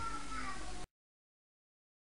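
A faint, short falling whine in the first second, then dead digital silence.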